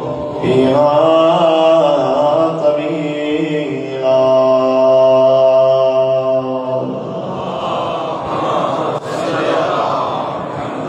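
A man's amplified voice chanting a slow, melodic recitation, with a long held note from about four to seven seconds in. After that the tune breaks off into a rougher, less tuneful sound for the last few seconds.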